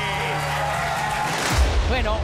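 Arena music with a steady low beat under a noisy haze, as a man's long drawn-out call fades out at the start. About three-quarters of the way in, a loud deep boom sound effect hits.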